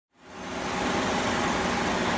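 Steady hum of city street noise, fading in from silence in the first moment.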